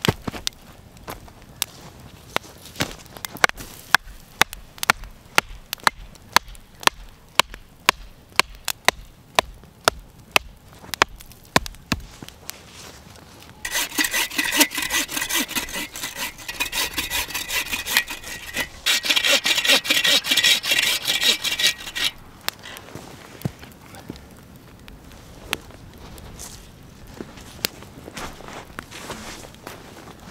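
Wooden stakes being pounded into the ground with a run of sharp knocks for the first twelve seconds or so. Then a hand saw cuts through a green wood stake in steady rasping strokes for about eight seconds, followed by a few faint knocks.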